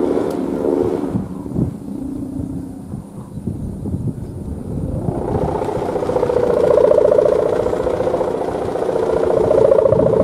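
Humming bow (sendaren) on a kite, its string vibrating in the wind to make a steady, buzzing drone whose pitch wavers. The drone is weaker for the first few seconds, then swells louder and higher from about halfway in.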